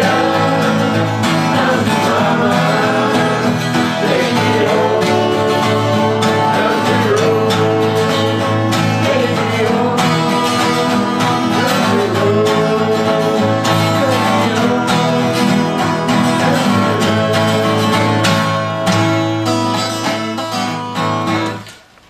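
Acoustic guitars strummed together, with voices singing an oldies song along with them. The playing fades and stops right at the end.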